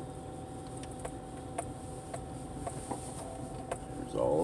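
Inside a car rolling slowly: a low steady engine and road hum with a faint steady whine, and light ticks about twice a second.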